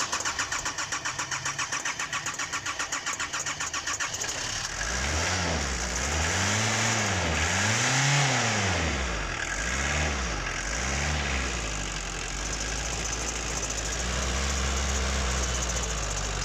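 Nissan CD17 four-cylinder diesel engine being cranked by the starter with a fast, even rhythm; about four seconds in it catches and runs. It is revved up and down about five times by hand at the throttle, then settles to a steady idle.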